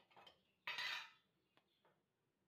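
Spoon scraping and clinking against a bowl while milk powder is scooped out and measured. There is a short scrape at the start and a longer, louder one just before the middle, then two light taps near the end.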